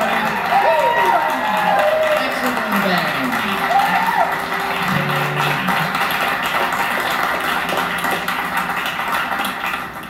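Live band playing with guitars and drums while a male voice sings, the sound easing off slightly near the end.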